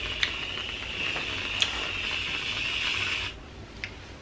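Aerosol can of whipped cream spraying: a steady hiss that cuts off suddenly a little past three seconds in, with a click or two along the way.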